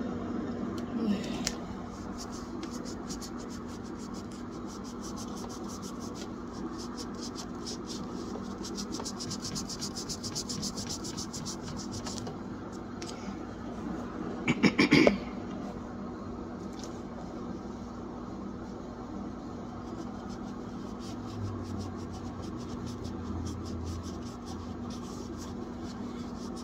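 A Norwex Kitchen microfiber cloth scrubbing the rubber door seal of an old fridge: a steady run of fast scratching and rubbing strokes, with one brief louder burst about halfway through.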